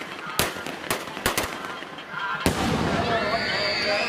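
Fireworks going off in a run of sharp cracks, four in the first second and a half, then a louder bang about two and a half seconds in, after which a continuous hiss with wavering shrill tones sets in.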